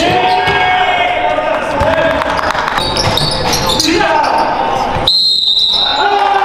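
Pickup basketball game audio in a reverberant gym: the ball bouncing on the hardwood floor, with players' voices. A high steady tone sets in just after five seconds.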